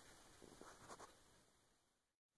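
Near silence with a few faint, short scratching sounds about half a second to a second in, then fading out.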